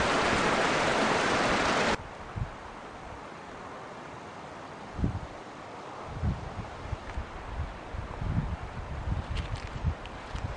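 A loud, steady rushing noise that cuts off abruptly about two seconds in, followed by quieter outdoor air with irregular low rumbles of wind buffeting the microphone.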